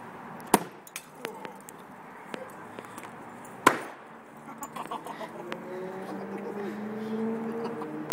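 Fluorescent tube glass breaking on impact: two sharp pops about three seconds apart, each followed by a few small clicks of glass pieces. A low droning tone builds up in the last three seconds.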